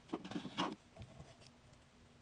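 A metal spoon scraping and clicking against the inside of a jar of Nutella as spread is scooped out, a quick run of scrapes in the first second, then a few faint ticks.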